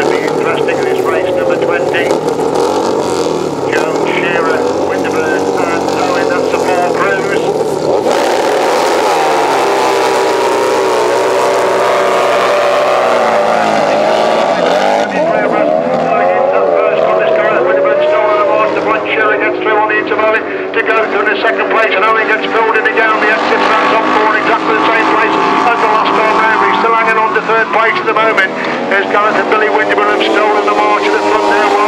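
Several 1000cc racing sidecar outfits' engines running and revving hard together, their pitches rising and falling. The sound changes abruptly about eight seconds in and again around fifteen seconds in.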